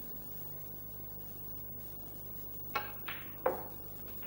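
Snooker balls clicking on the table: three sharp clicks with a short ring, about a third of a second apart, near the end, over faint room tone with a low hum.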